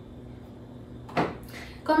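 Quiet room with one short knock about a second in as a metal spoon is picked up off the table; a woman starts speaking right at the end.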